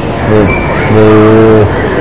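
A man's voice: a short word, then a long, level 'ehh' held for nearly a second, a hesitation sound in mid-sentence.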